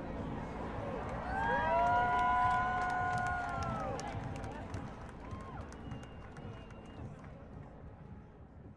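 Outdoor protest crowd: a hubbub of voices, with several people holding a long shouted call together for about two and a half seconds, starting about a second in. The crowd sound then fades away.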